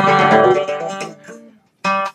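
Acoustic guitar, the last strummed chord of a bluegrass tune ringing and fading away about a second and a half in, then a short strum near the end.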